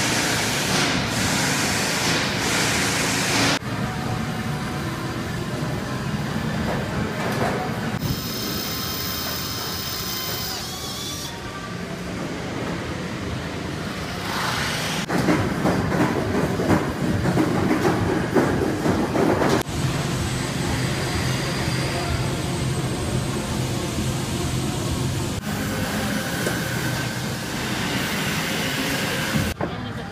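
Aircraft assembly hall ambience: steady machinery hum and hiss with scattered clatter. It changes abruptly every few seconds from one stretch of factory noise to another, and a high steady whine is heard for a few seconds about a third of the way in.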